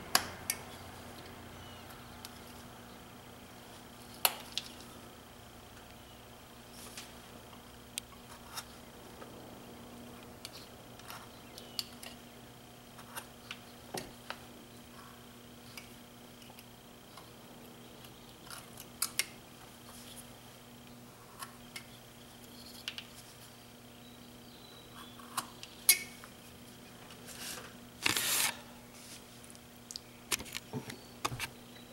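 Carving knife slicing chips off a small block of wood: scattered short, sharp cuts every second or few, with one longer cut near the end.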